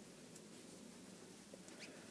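Near silence with a few faint squeaks of worsted-weight yarn drawn over a crochet hook as tight single crochet stitches are worked; yarn squeaks like this when stitches are tight.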